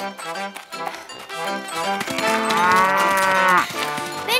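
Cartoon cow giving one long moo that starts about two seconds in and rises then falls in pitch: the spotted cow's angry call. Light background music plays under it.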